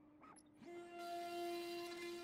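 CNC router spindle whining at a steady pitch, faint at first, then stepping slightly higher and louder about two-thirds of a second in.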